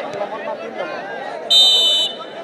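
A referee's whistle is blown once, a high, steady blast about half a second long starting about one and a half seconds in, over crowd chatter. It is the signal for the penalty kick to be taken.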